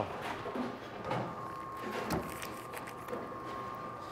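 Quiet bowling-alley room tone with a faint steady hum and a couple of soft knocks, about one and two seconds in.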